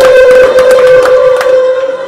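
A loud, steady high-pitched tone through the PA loudspeakers, dying away just before the end, with faint clicks under it.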